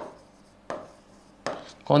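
Chalk writing on a blackboard: a few sharp taps and short scrapes as the strokes land, each fading quickly.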